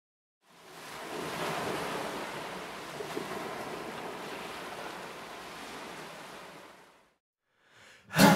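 Ocean surf washing onto a beach, a steady rushing that fades in over the first second and fades out near the end.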